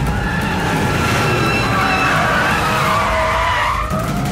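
Many cars driving in together with engines running and tyres skidding, several long squeals overlapping and gliding up and down in pitch over a low rumble.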